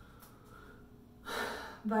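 A woman's sharp intake of breath, lasting about half a second, just before she speaks again.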